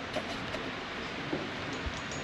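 Steady background hiss of room tone with a few faint, brief clicks.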